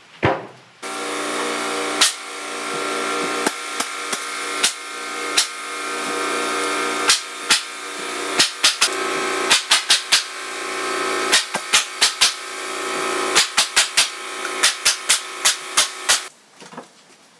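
Pneumatic nail gun firing nails through a sheet-goods workbench top into its wooden frame: many sharp shots at uneven spacing, coming more often in the second half, some in quick pairs. A steady machine hum runs underneath from about a second in.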